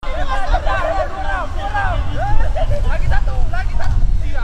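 Several men's voices talking and calling out over one another in lively group chatter, with a steady low rumble underneath.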